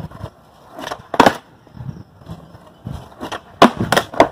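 Skateboard on concrete: a loud clack about a second in, then a quick run of clacks near the end as the board is stepped on and ridden.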